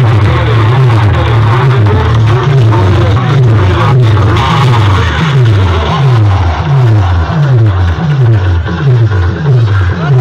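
Very loud DJ music played through a large stack of horn loudspeakers, dominated by heavy bass. About halfway through, the bass turns into a run of repeated falling sweeps, roughly two a second.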